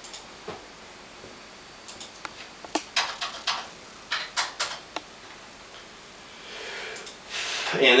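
Computer keyboard keys and mouse being clicked: a dozen or so short, irregular clicks spread over the first five seconds, as a tempo is typed into a notation program on the computer.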